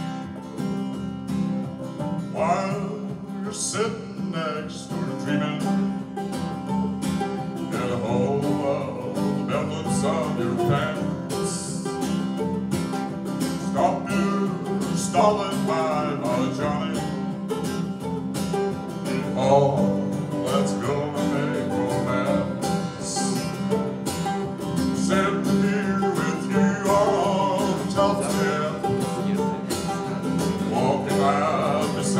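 Live acoustic song: a strummed steel-string acoustic guitar and a mandolin playing together, with a man's voice singing at times.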